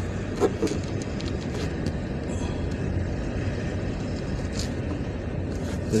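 Steady engine and road noise of a car in motion, heard from inside the cabin.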